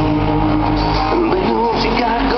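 Loud live country-rock band music with guitar prominent, sustained notes bending in pitch in the second half.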